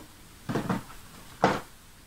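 A cardboard advent-calendar box being handled, with a short scrape about half a second in, then a single sharp tap about a second and a half in, as a small tube of hand cream is lifted out of its compartment.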